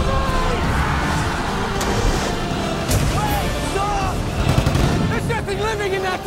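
Film trailer soundtrack: music under a heavy low rumble, with booms and crashing impacts and people shouting and screaming, the shouting thickest near the end.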